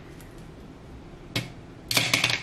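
Small hard clicks of makeup items being handled on a table: one sharp click about one and a half seconds in, then a quick run of clicks near the end.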